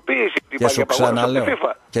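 Speech only: men talking in Greek, with short pauses between phrases.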